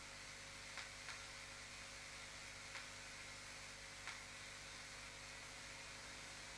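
Very faint room tone in a pause: a steady low hum and hiss, with four faint small clicks.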